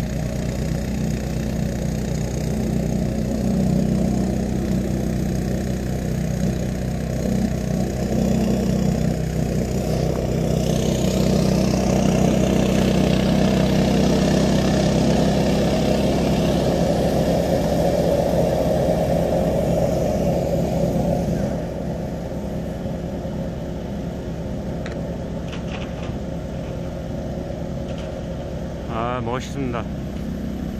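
Walk-behind snowblower engines running steadily under load while throwing snow. The sound is loudest around the middle and drops a step about two-thirds of the way through.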